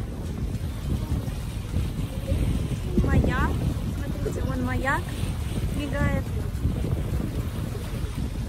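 Wind noise on the microphone with a steady low rumble aboard a moving boat on a lake.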